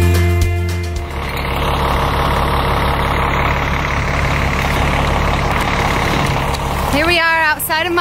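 Music ends about a second in, giving way to a steady rush of road traffic. A woman starts speaking near the end.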